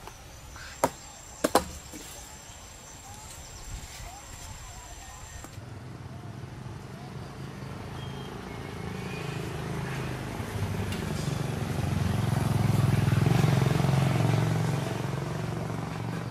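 A motorbike engine running, growing louder to a peak about 13 seconds in and then easing off. Before it, a steady high insect drone with two sharp clicks.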